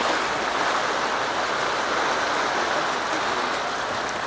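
Steady rush of fast-flowing Nile river water below Murchison Falls, easing slightly near the end.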